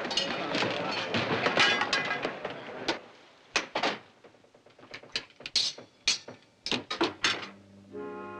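Men's voices and shouting on a crowded ship's deck for about three seconds. Then a run of about a dozen irregular sharp wooden knocks and thuds in a small wood-panelled cabin.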